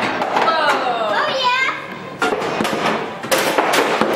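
Children's voices squealing, one long falling cry then quick wavy rises, over skee-ball balls knocking and rolling on the lanes, with several sharp knocks in the second half.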